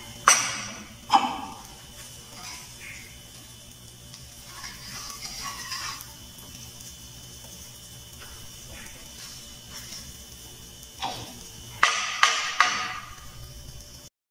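Wooden spatula knocking and scraping in a small non-stick frying pan while a block of butter is pushed through scrambled egg. There are two sharp knocks with a short ring in the first second and a quick run of four knocks near the end, with quieter scraping between them.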